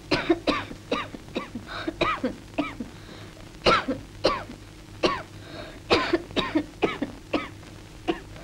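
A woman coughing hard in repeated fits, several short coughs in each fit, one fit after another: the cough of her feverish illness.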